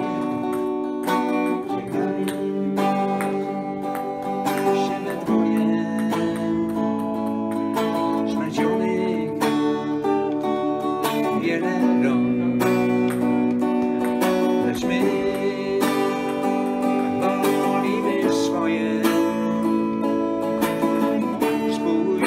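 Les Paul-style electric guitar played through an amplifier: a melody of held, sustained notes over changing chords.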